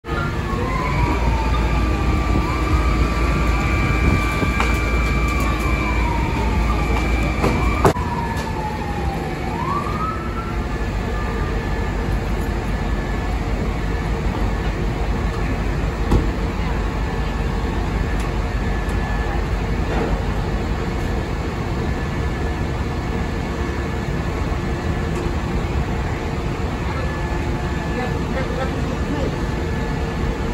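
Fire truck sirens wailing over the heavy running of fire apparatus engines, the wails winding down and stopping about ten seconds in. After that, the apparatus engines keep running with a steady drone.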